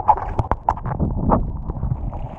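Underwater recording: irregular sharp clicks and knocks, a few a second, over a low rumble of moving water.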